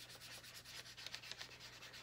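Felt-tip marker scribbling on a paper worksheet: faint, quick back-and-forth strokes as a picture is coloured in green.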